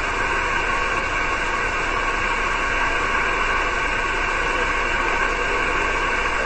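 Steady hiss from a 6-metre SSB receiver tuned to 50.135 MHz upper sideband between transmissions. This is band noise with no readable signal, heard through the narrow voice filter.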